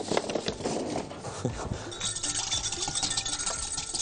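Hand wire whisk beating a thin lemon-juice and balsamic-vinegar dressing in a glass measuring cup, its wires clicking rapidly against the glass. The sound turns sharper and hissier about halfway through.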